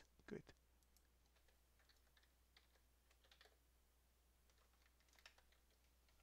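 Near silence: room tone with a few faint, scattered computer keyboard clicks.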